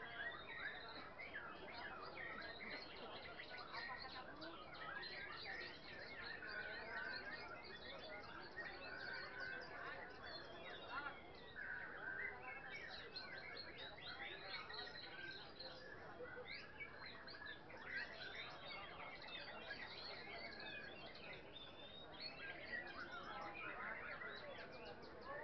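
Many caged songbirds hung together, singing at once: a dense, continuous tangle of overlapping chirps, trills and whistles, with faint crowd murmur beneath.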